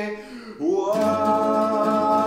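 A man singing with classical guitars: a long held note fades out, and about half a second in a new note slides up and is held while the guitars are strummed.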